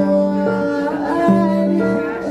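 Electric guitar played live, a melody of held, overlapping notes changing about every half second over a lower line.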